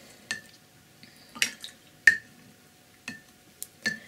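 Paintbrush being rinsed in a water jar and knocking against its rim: about six short clinks spread over the few seconds, some with a brief glassy ring.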